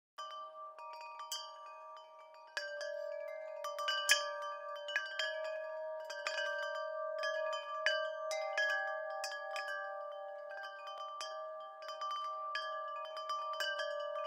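Wind chimes tinkling: irregular struck metal tones that ring on and overlap, growing fuller about two and a half seconds in.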